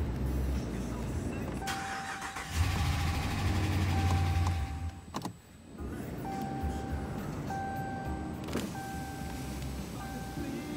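Pickup truck engine turning over for about three seconds, then stopping suddenly. The dashboard's warning chime then repeats about once a second; the cluster is showing a key-in-ignition warning with the engine off.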